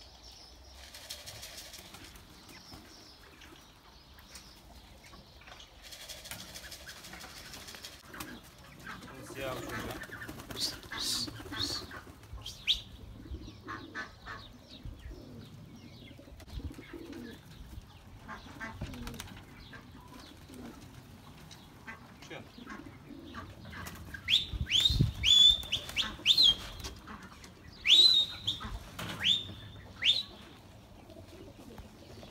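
Domestic pigeons flapping their wings as they take off, with cooing. Near the end comes a run of loud, sharp, high chirps that sweep up in pitch.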